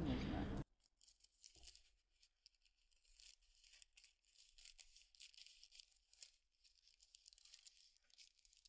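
Faint crisp rustle and snipping of scissors cutting through thin tracing paper, with many small ticks of the blades and paper.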